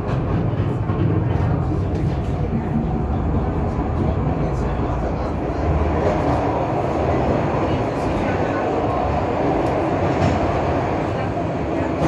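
Funicular railway car running downhill on its track, a steady rolling rumble heard inside the cabin. The noise grows fuller about halfway through, as the car runs into a covered section.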